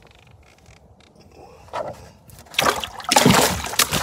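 Bluegill splashing in the water of a cooler as it goes in, a short splash just before two seconds in, then a longer, loud stretch of splashing and sloshing in the second half.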